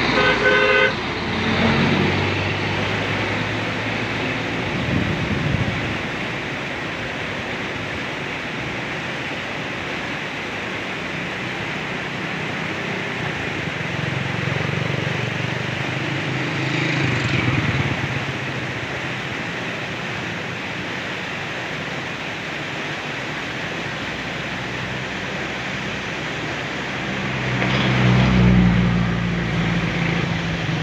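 Steady road traffic noise with vehicle engines passing. A vehicle horn toots once in the first second, and a heavier engine rumble swells near the end.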